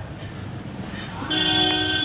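A horn sounds once, a steady pitched blast lasting under a second near the end, over a steady low rumble.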